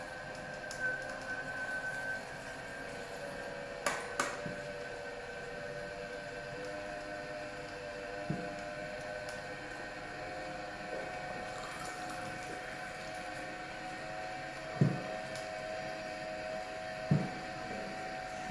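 Slow juicer's motor running with a steady hum while it presses soaked almonds with water. A few short knocks sound over it, from the spout and containers being handled, the loudest two near the end.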